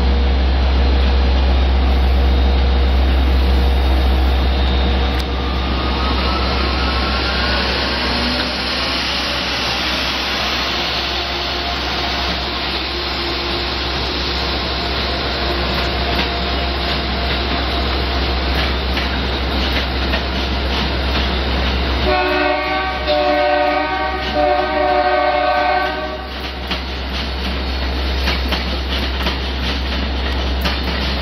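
An Amtrak train led by a GE Genesis locomotive rolls past with a steady rumble, loudest in the first few seconds. About two-thirds of the way through, a chord-like train horn sounds for about four seconds in two blasts.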